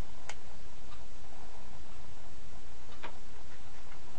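Steady hiss from the narration's recording, with two faint clicks, about a third of a second in and again near three seconds.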